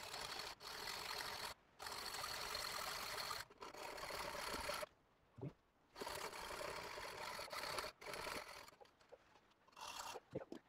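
Hacksaw cutting through a protruding M8 stainless steel bolt: quiet, even back-and-forth sawing strokes of the blade on metal, broken by several short pauses.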